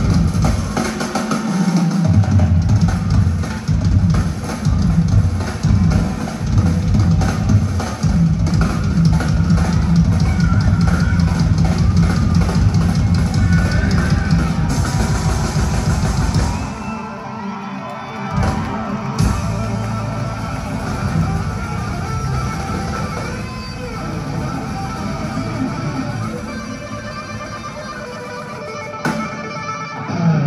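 Live band music over an arena sound system, with drum kit and electric guitar, heard from the audience seats. About halfway through the drums fall away into a softer passage, and the full band comes back in at the very end.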